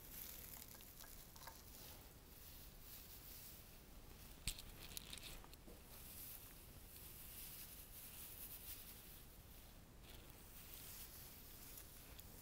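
Faint rustling and crinkling of a bundle of dry grass stems being pushed into a flower arrangement, with one sharp click about four and a half seconds in.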